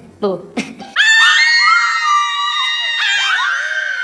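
Screaming in fright: long, high-pitched screams from more than one voice, starting about a second in, with a fresh scream near three seconds.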